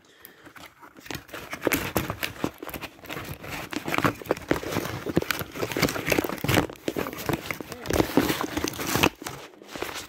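Continuous rustling and crinkling with many small clicks and knocks, as of things being rummaged through and handled close by; it stops shortly before the end.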